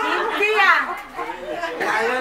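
Several people talking at once, with one voice swooping up and then down in pitch about half a second in.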